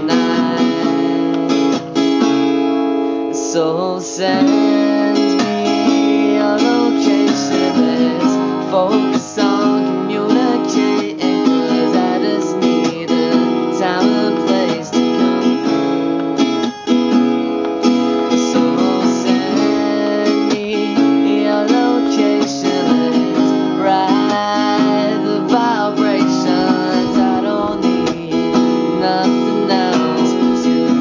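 Acoustic guitar strummed in a steady rhythm, chords ringing on with picked notes between the strokes.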